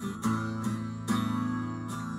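Acoustic guitar strummed by hand: a few chord strokes, the strongest about a second in, then the chord left to ring.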